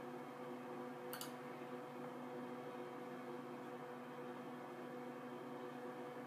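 Steady low hum of a running computer, with a single sharp mouse click about a second in.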